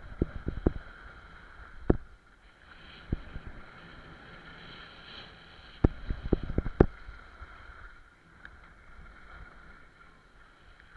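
Skis running and scraping over hard-packed piste snow during a downhill run, heard from a body-worn camera, with clusters of sharp knocks and clatter: a burst near the start, single knocks around two and three seconds in, and a quick run of them about six seconds in.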